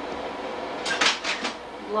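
Slide projector changing slides: a short clatter of four or so quick clacks about a second in, over a faint steady hum.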